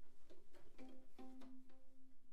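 Faint viola sounds before playing begins: light plucks and taps, then a quiet single note held for over a second.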